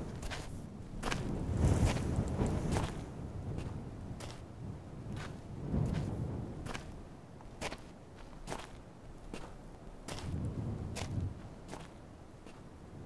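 Footsteps of boots walking on gravel: a steady run of sharp clicking steps about twice a second, louder in the first few seconds.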